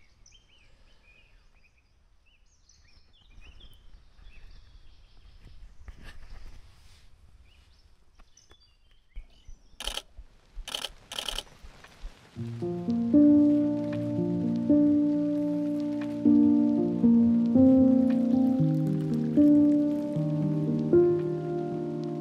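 Faint birdsong over a low outdoor rumble, then three sharp clicks about ten seconds in. From about halfway through, music of slow, sustained chords takes over and is the loudest sound.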